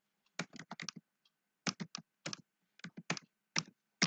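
Computer keyboard typing: sharp keystrokes in short, uneven bursts as a string of digits is entered.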